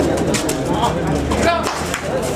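Crowd of kabaddi spectators shouting and cheering during a raid: many overlapping voices over a steady din, with scattered sharp claps or clicks.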